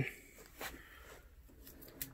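Quiet room tone in a small workshop with one faint, short click about two-thirds of a second in.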